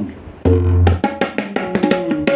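Tabla, the dayan and metal bayan, played solo in an Ajrada kayda in chatasra jati. After a brief lull, a resonant bayan bass stroke comes in about half a second in, followed by a quick run of crisp strokes on both drums.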